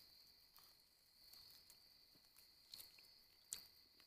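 Near silence: a faint steady high insect chorus, crickets at dusk, with a few soft ticks.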